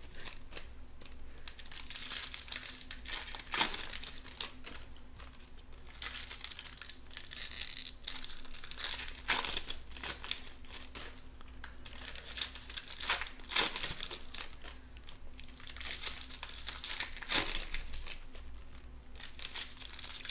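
Foil wrappers of Topps Chrome Jumbo card packs crinkling and tearing as they are ripped open by hand. The crackling is irregular, with sharper, louder rips every few seconds.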